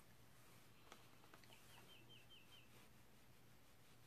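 Near silence: room tone with a steady low hum and a few faint clicks, then a faint run of six quick, falling, bird-like chirps in the middle.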